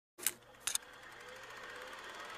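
Two short clicks about half a second apart, then a faint steady hiss: the quiet lead-in of the song recording before the music begins.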